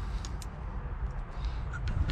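A hand rummaging through debris on a truck's floor carpet under the seat, with a few small clicks and scrapes over a steady low rumble.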